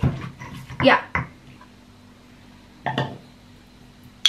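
Stone pestle pounding chillies, onions and garlic in a heavy stone mortar: a few dull knocks, one about a second in and another near three seconds.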